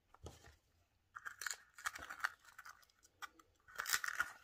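Kitchen knife cutting through small sweet peppers: clusters of short, crisp cuts about a second in, around two seconds, and again near the end, after a soft knock at the start.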